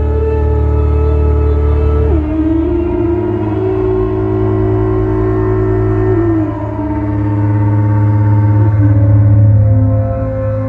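SOMA Pipe synthesizer on its Orpheus algorithm, played through the mouthpiece: a steady low drone with a higher tone above it that holds each note for a couple of seconds and slides down to the next, stepping lower about two seconds in, again after six seconds and near the end.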